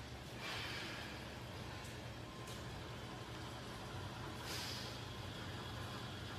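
A man's soft, forceful breaths while he tenses and holds muscle poses, one about half a second in and another a little before the end, over a steady low hum.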